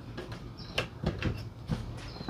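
Plastic book/tablet holder of a Cooper Mega Table folding laptop desk being folded and handled, giving a few light clicks and knocks.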